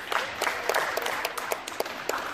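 A small crowd of spectators clapping, the individual claps standing out sharply rather than merging into a roar.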